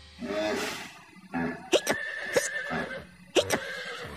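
Cartoon horse sound effects: a short whinny, then a run of short, sharp hiccups over light background music.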